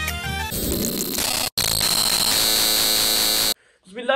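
Music for about half a second, then an edited-in harsh, static-like noise effect with a high steady tone in it. It drops out briefly about a second and a half in and cuts off suddenly near the end, leaving a moment of silence.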